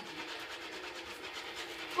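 Faint steady rubbing and handling noise from a handheld phone being moved, over a low steady hum.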